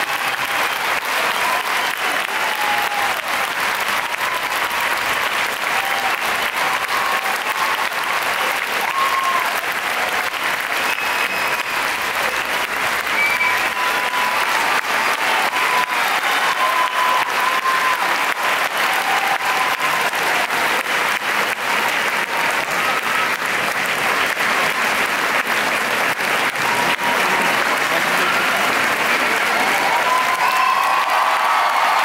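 Audience applauding steadily, with many hands clapping and a few voices calling out over it.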